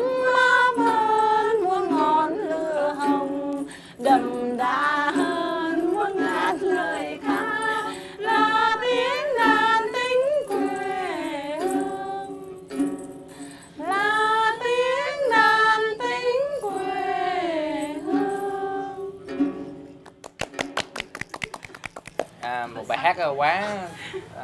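Tày women singing a folk song in Tày to their own đàn tính, the three-string lute with a dried calabash-gourd body, with long held, wavering notes. The singing stops about 20 s in, followed by a short run of sharp clicks and then talking near the end.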